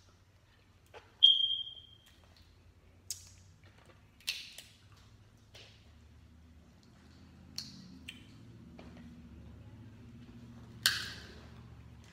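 Crab-leg shells being cracked and pulled apart by hand over a glass bowl: scattered sharp cracks and snaps. The loudest is a short ringing clink about a second in, and a strong crack comes near the end.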